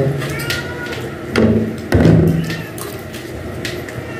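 Spoons and forks clicking and scraping against plates as two people eat, with a short vocal murmur from one of them about a second and a half in.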